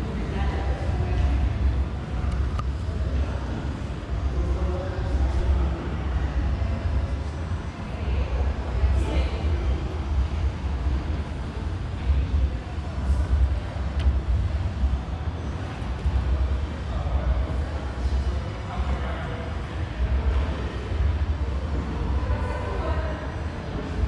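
Room ambience: a low, uneven rumble with faint, indistinct voices of other people in the background.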